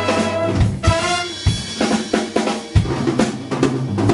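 Jazz big band drum kit playing a break of snare, bass drum and rimshot strokes while the horns largely drop out, with a few short horn stabs about a second in.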